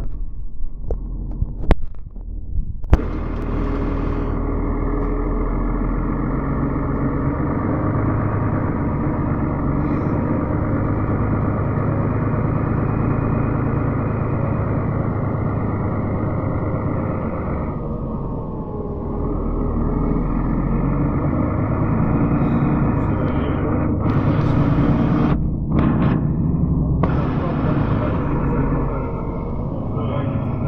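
Inside a moving city bus: the steady drone of the bus's engine and running gear, after a few sharp knocks in the first three seconds.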